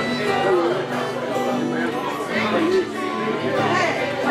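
Acoustic guitars playing chords in a live group jam, with people talking over the music.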